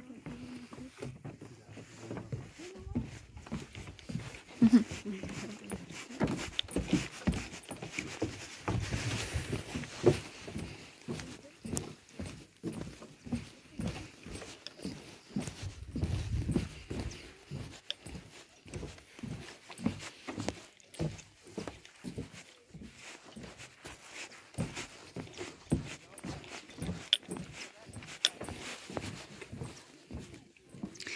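Footsteps on a wooden plank boardwalk, an even walking pace of about two steps a second.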